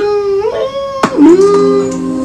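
Played-back audio from the start of a music video: drawn-out tones that glide up and down, a sharp hit about a second in, then several steady held tones.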